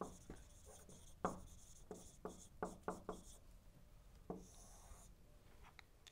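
Marker writing on a whiteboard: faint, short, separate strokes and taps, with a brief high squeak just before five seconds in.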